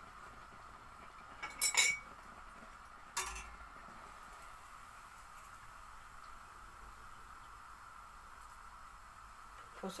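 Rounds of gözleme dough frying in a pot of hot oil with a faint steady sizzle. It is broken by a sharp metal clink a little under two seconds in and a duller knock about three seconds in, from kitchen utensils against the pot.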